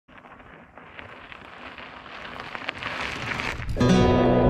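Mountain bike tyres crackling over loose red shale, growing steadily louder as the bike approaches. Music cuts in suddenly near the end and is louder than the tyres.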